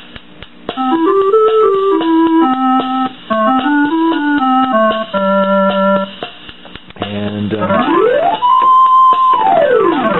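Suzuki Keyman PK-49 preset keyboard's clarinet voice playing a short melody of single notes that step up and down and end on a held note. This is followed by a sweep of notes up to a high held note and back down again. The tone is smooth and round.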